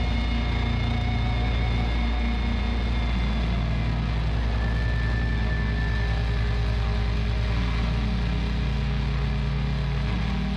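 Doom metal song: slow, heavily distorted, low-tuned guitars and bass holding long, sustained notes at a steady loudness.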